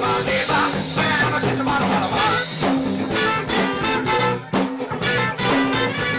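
Live funk-rock band playing with a steady beat: drums, electric guitar and bass, with saxophone and trumpet in the lineup.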